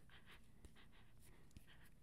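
Near silence: faint room tone with a few faint sniffs as a card is smelled up close.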